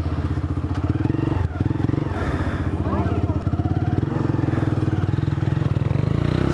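Motorcycle engine running steadily close to the microphone, with a fast, even pulse and a brief dip about a second and a half in.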